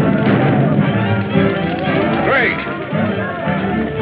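Film score music with voices shouting over it; one cry rises in pitch about two seconds in.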